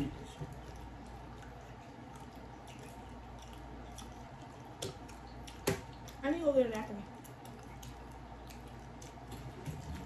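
People eating nachos by hand: faint chewing and mouth sounds with scattered sharp clicks, the loudest a little before six seconds in. A brief voice sound falling in pitch, like a hum, comes at about six and a half seconds in.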